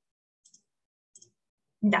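Two faint computer mouse clicks about a second apart, each a quick double tick, as an arrow is placed on an on-screen slide. A woman says a short "da" near the end.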